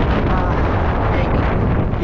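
Strong wind buffeting the microphone: a loud, steady, deep rushing noise.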